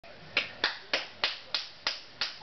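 A 10½-month-old baby clapping his hands: six evenly spaced claps, about three a second.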